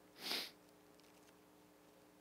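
A single short sniff through the nose, picked up close on a headset microphone, about a quarter of a second long.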